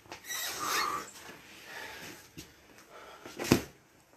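A man breathing and moving about with rustling, then a single sharp knock about three and a half seconds in.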